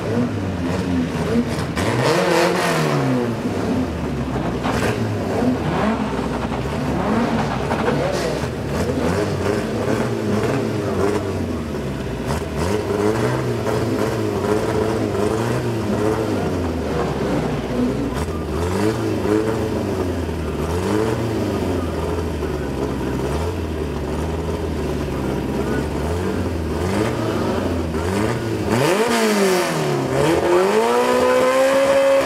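Drag racing car engines at the start line, blipped over and over so the pitch rises and falls about once a second, with a bigger rev near the start and a sharp drop and climb in revs near the end.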